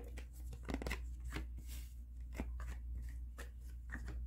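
Tarot cards being handled and laid down on a cloth-covered table: scattered soft taps and slides of card stock over a steady low hum.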